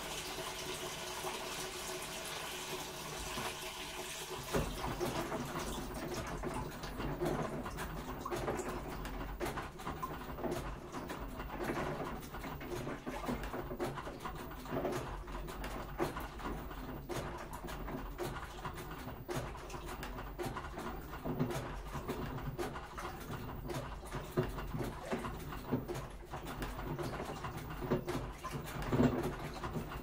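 Washing machine filling with water with a steady hiss. About four and a half seconds in, the drum starts turning, and water sloshes and gurgles in a slow, uneven, repeating rhythm over a low rumble.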